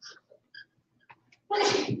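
Faint short squeaks of a dry-erase marker writing on a whiteboard in the first second, with a light click. Near the end a sudden loud burst runs straight into a man's speech.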